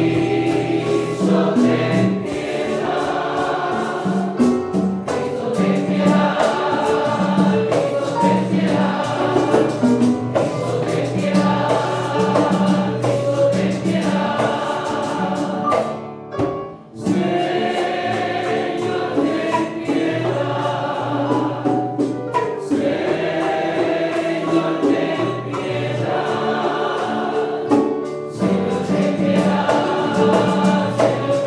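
Church choir singing a sung part of the Mass liturgy, breaking off briefly about sixteen seconds in before carrying on.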